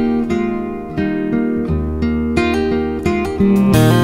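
Instrumental passage of a country song: acoustic guitar playing chords, the chord changing about every second.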